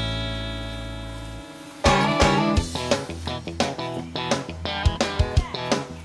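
Guitar music: a held chord rings and fades over the first second and a half, then a run of quick plucked and strummed notes follows.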